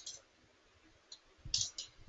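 A few faint computer keyboard keystrokes, sparse and irregular: one at the start and a quick pair about one and a half seconds in.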